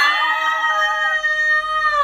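A loud, excited shout from young voices, held on one pitch for about two seconds and dropping away at the end.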